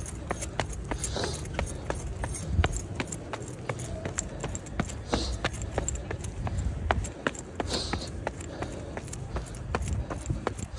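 Running footsteps of a runner going up outdoor concrete stairs: quick, regular footfalls, several a second, with a few hard breaths from the runner.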